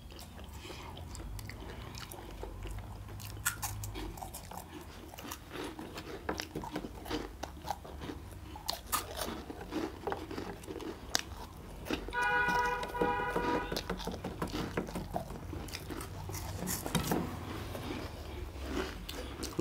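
Close-up crunching and chewing of crispy fried cheese balls, a steady run of small irregular crackles. A short pitched sound, the loudest moment, comes about two thirds of the way through.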